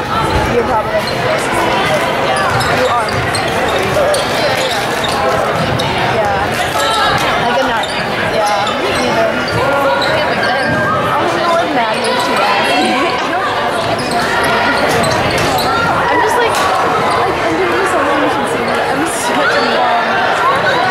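A basketball being dribbled on a hardwood gym floor, with players' feet on the court, under constant indistinct chatter and calls from the crowd and players, echoing in a large gym.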